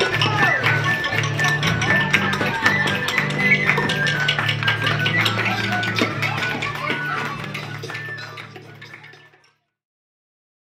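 Jug band music: a low bass line under many quick percussive clicks and taps, fading out over the last two seconds or so.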